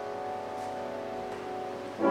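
Carl Rönisch grand piano in a soft passage: held notes ring on and slowly fade, with a few light notes struck.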